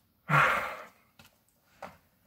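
A man's sigh: one breathy exhale lasting about half a second, followed by a couple of faint taps near the end.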